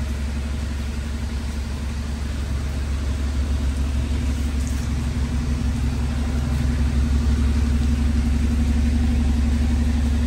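Hyundai Accent's engine idling steadily, heard from beneath the car as a low, even hum that grows a little louder in the second half.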